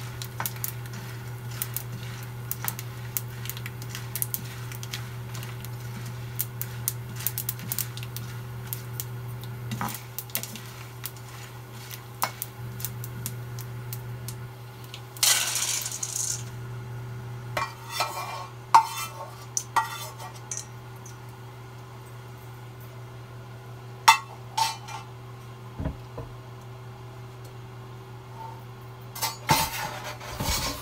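Slotted metal spoon clicking and scraping against a frying pan as a tempering of dals, red chillies and curry leaves is stirred in sesame oil. About fifteen seconds in there is a brief hiss, and after the pan comes off the burner only scattered metal clinks of pans and bowls remain, over a steady low hum.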